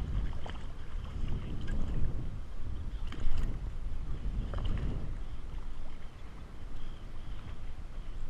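Wind rumbling on the camera microphone and water sloshing against a kayak hull, with short splashes from a hooked striped bass at the surface; the loudest splash comes about three seconds in as the fish is pulled from the water.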